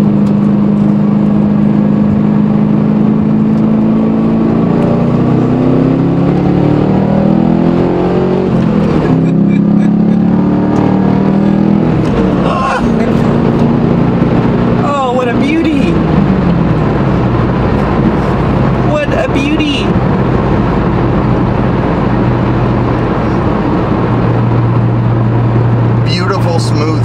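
2011 Chevrolet Camaro with an aftermarket loudmouth exhaust, heard from inside the cabin while cruising: a steady engine and exhaust drone over road noise. Its pitch wavers and shifts a few times mid-way and settles lower near the end.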